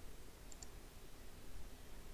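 A computer mouse button clicking: two faint quick ticks close together about half a second in, over a low steady hiss.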